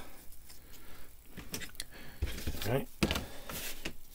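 Thin laser-cut wooden rack parts being handled and set down on a desk: scattered light clicks and taps of wood on wood and on the tabletop, with a few firmer knocks.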